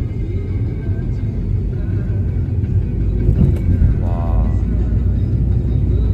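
Steady low rumble of a car driving at low speed, heard from inside the car, with faint background music under it.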